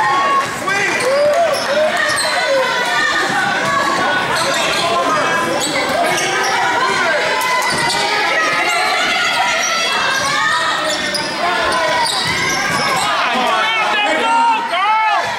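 Basketball game play in a gymnasium: the ball bouncing on the hardwood floor amid shouts and voices of players and spectators, echoing in the hall.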